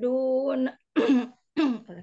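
A woman's chanted Quran recitation holds a long vowel, breaks off under a second in, and is followed by two short coughs about half a second apart.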